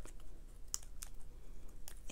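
A few faint, sparse clicks and taps of cardstock die cuts being handled: about three light clicks spread over two seconds.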